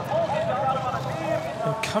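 Speech: a person's voice talking, a little quieter than the commentary either side.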